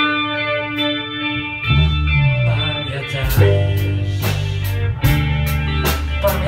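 A small rock band playing: an electric guitar rings out a sustained chord alone, then the bass guitar comes in under it a little under two seconds in, and the drums join with regular cymbal strikes soon after.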